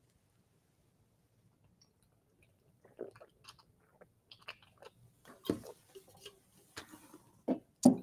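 Near silence for about three seconds, then scattered soft clicks and mouth noises close to a microphone, with one louder brief thump a little over halfway through.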